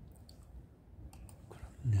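A quiet pause with a few faint, scattered clicks, then a man's short spoken 'ne' near the end.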